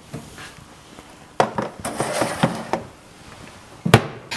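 A wire rack or tray with pieces of chicken being handled and set into a countertop food dryer: clattering and scraping about a second and a half in, then one sharp knock just before the end.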